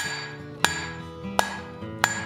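Hand hammer striking red-hot 3/8-inch square steel bar on an anvil, drawing out a taper: steady blows a little under a second apart, each leaving a ringing tone.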